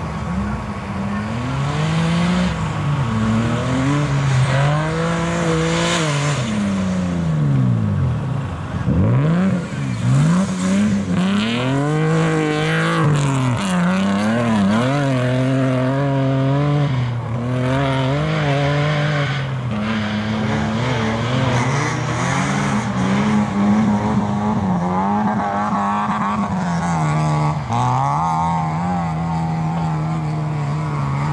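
BMW E30 rally car's engine revving hard on a gravel stage, its pitch climbing and dropping over and over as it changes gear and lifts off for corners, with a deep downward sweep about eight seconds in.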